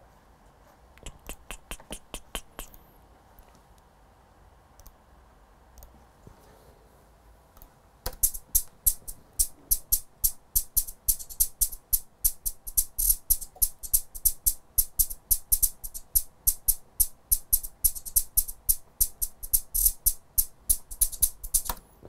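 Programmed drill hi-hat pattern playing solo from a drum machine, a fast run of crisp ticks. It starts briefly about a second in and stops, then from about eight seconds runs on steadily. The hits move a couple of notes up and down.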